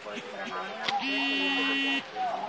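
A steady buzzing tone, sounding at one pitch, starts about halfway in, holds for about a second and cuts off suddenly. A sharp click comes just before it, over faint background voices.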